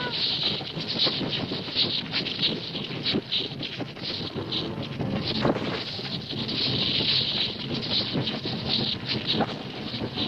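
Stampede sound effect: the continuous, dense rumble and clatter of a herd of wildebeest running, many hooves drumming at once.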